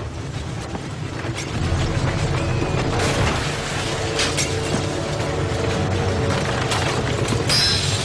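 Staged sound effects of a house shaking in a quake: a steady deep rumble with scattered knocks and rattles of furniture, then a crash of breaking glass near the end.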